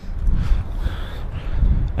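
Wind buffeting the microphone: a loud, irregular low rumble.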